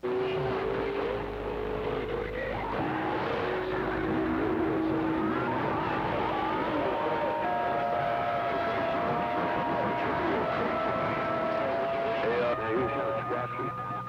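CB radio receiver on channel 6 picking up a doubled-up channel: steady static with several whistling tones at different pitches from stations keying over each other, one tone sliding slightly near the start.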